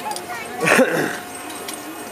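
A person's brief high-pitched vocal squeal lasting about half a second, a little under a second in.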